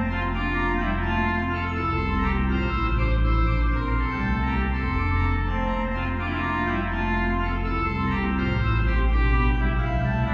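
Organ music: slow, held chords over a deep sustained bass, the harmony shifting every second or two.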